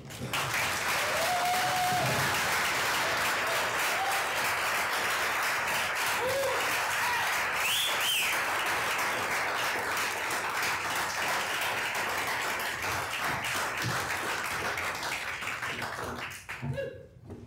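Audience applauding steadily, with a few cheers and whoops scattered through it, one high whoop about eight seconds in; the applause stops near the end.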